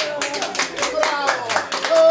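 A group of people clapping their hands in a quick, fairly even rhythm of about five claps a second, with voices talking and calling over the claps.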